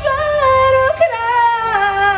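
A woman singing live into a microphone, holding long notes with vibrato: one note for about a second, then a second note that slides slowly downward.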